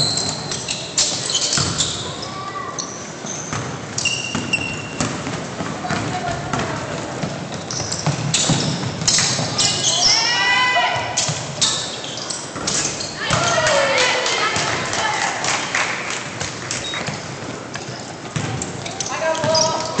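Basketball thumping on a hardwood gym floor again and again during live play, with players' voices calling out and echoing in the hall.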